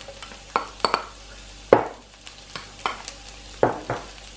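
Spatula scraping and tapping against a non-stick electric frying pan while minced garlic is stirred in oil, about eight sharp strokes at uneven intervals, the loudest a little before halfway, over a faint sizzle.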